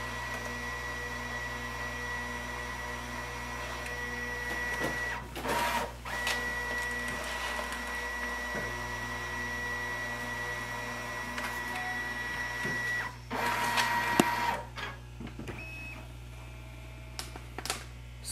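Brother MFC-J4335 all-in-one's automatic document feeder drawing a stack of pages through for a scan: a steady motor whine. A short louder burst comes about five seconds in. The whine stops about thirteen seconds in, followed by a brief louder burst, after which the machine goes quieter.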